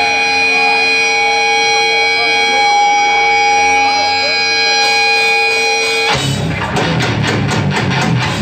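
Electric guitar holding a ringing note, with voices over it, then about six seconds in the full hardcore band comes crashing in with distorted guitars and pounding drums as the song starts.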